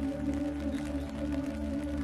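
Slow ambient music of long, held low tones that swell and fade, with a soft, even hiss of rain underneath.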